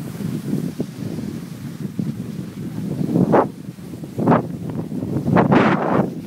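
Wind buffeting the microphone of a handheld recorder while skiing downhill: a steady low rush with several louder gusts about three, four and five and a half seconds in.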